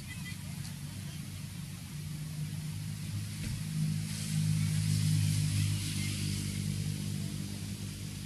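A motor vehicle's engine running steadily, swelling louder for a couple of seconds around the middle before easing back.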